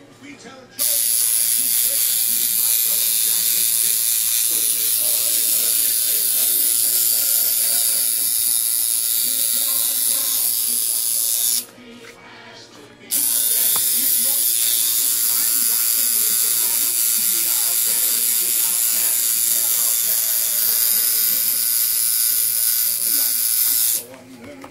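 Electric tattoo machine running steadily in two long stretches, cutting out for about a second and a half near the middle before starting up again.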